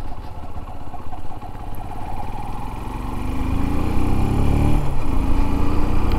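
Shineray SHI 175 motorcycle's single-cylinder engine running as the bike is ridden. About two to three seconds in, its pitch rises and it grows louder as the bike accelerates.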